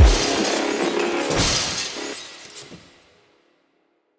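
The closing hit of an electronic dubstep track: a loud low boom with a noisy crash that rings on and fades out, gone by about three seconds in.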